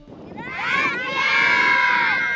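A crowd of schoolchildren shouting and cheering together, many high voices at once, swelling in about half a second in and staying loud.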